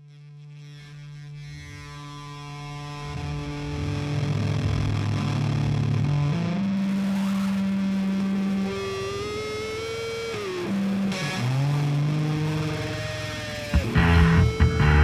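Distorted electric guitar opening a funk-metal track: held notes swell in from quiet, then slide and bend in pitch, and the full band comes in at the very end.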